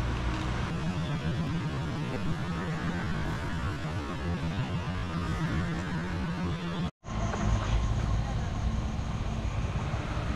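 Steady outdoor background noise with a low, even hum, like distant traffic or an engine. It cuts out abruptly about seven seconds in and gives way to a similar background with a steady high-pitched tone.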